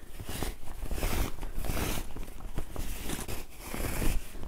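Cotton fabric rustling and scrunching as hands work elastic through a bias-tape casing, gathering the fabric along it, with a few small clicks.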